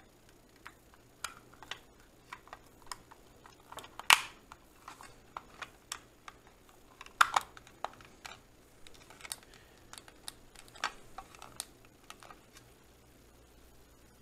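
Scattered clicks and taps of a small plastic power-adapter case and its wires being handled and fitted together, with two louder knocks about four and seven seconds in.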